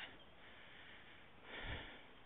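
Faint steady hiss, then near the end one short breath let out close to the microphone.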